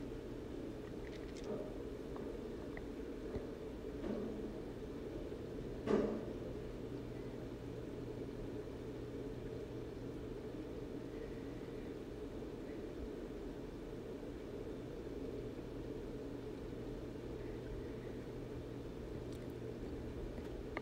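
Quiet workbench room tone: a steady low hum, with a few faint light taps in the first six seconds, the loudest about six seconds in, from handling the opened iPod on the work mat.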